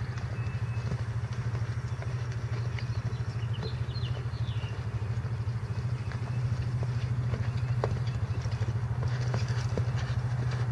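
Horse cantering on soft arena dirt, its hoofbeats faint, under a steady low mechanical drone that runs throughout; a few brief bird chirps come in the middle.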